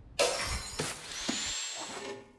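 A sudden loud smashing crash, followed by a few clattering knocks and a thin high ringing tone in its tail.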